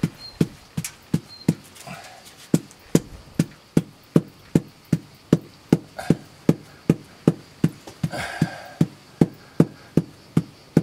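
A hammer tapping a Majella limestone block in small, even knocks, about two and a half a second, bedding it into fresh mortar. The tapping is meant to compress the mortar behind the stone so it holds on by suction.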